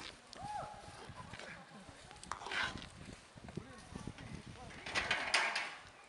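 Indistinct talking voices, with two short noisy bursts about two and a half and five seconds in.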